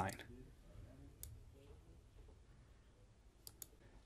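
Near silence with a few faint clicks, likely computer mouse button clicks: one about a second in and two in quick succession near the end.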